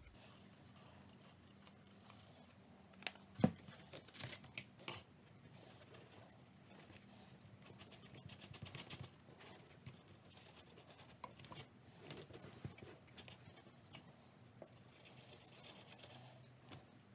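Faint scraping and scratching of a thin wooden stick stirring two-part epoxy resin and hardener on painter's tape over an MDF board, in quick runs of strokes. A sharp tap a few seconds in is the loudest sound.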